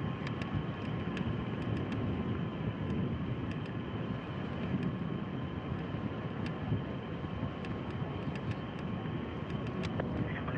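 Steady rushing noise at the pad of a fuelled Soyuz rocket as oxygen vapour vents from its side, with a faint steady tone and scattered small clicks.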